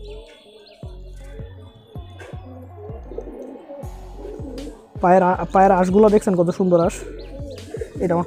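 Domestic pigeons cooing in the loft: faint coos for the first few seconds, then a louder run of low, warbling coos from about five to seven seconds in.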